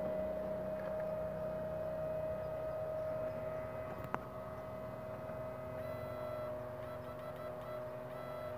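Electro-fishing inverter running with a steady electrical hum and whine, one clear tone over a low drone. A single sharp click about four seconds in.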